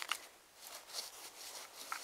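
A metal detector pinpointer probing through loose soil and dry leaf litter: faint, scattered scratching and rustling strokes.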